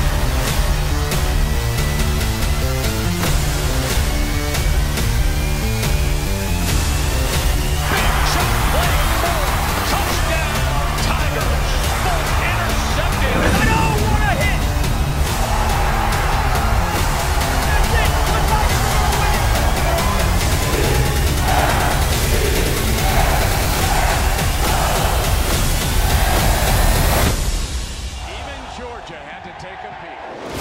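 Heavy-bass hype soundtrack music with a steady beat and a rising sweep through its first several seconds. A noisier layer joins about eight seconds in, and the music fades down near the end.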